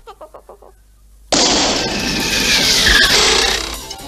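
Cartoon soundtrack effects: a few fading musical notes and a short lull, then a sudden loud rushing whoosh with a falling whistle that lasts about two and a half seconds.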